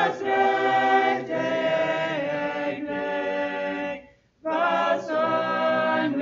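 Mixed choir of men's and women's voices singing a hymn in parts, unaccompanied, with a brief break between phrases about four seconds in.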